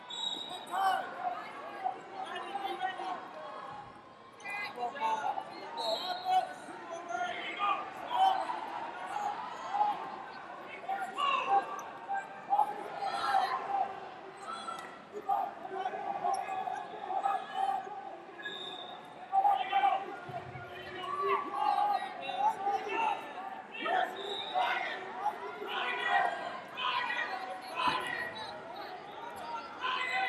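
Echoing background of a large gym hall during a wrestling match: a continuous mix of distant voices from coaches and spectators, with scattered thumps of wrestlers on the mats.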